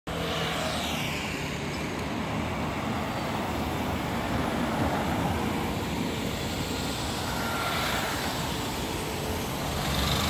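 City street traffic: a motor scooter goes past close by near the start, then other vehicles pass over a steady hum of traffic.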